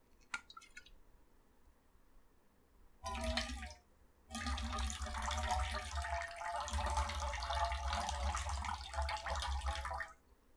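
Liquid poured from a glass bottle: a short pour about three seconds in, then a longer steady pour from about four seconds in. Just before, a light click as the bottle's metal screw cap is twisted off.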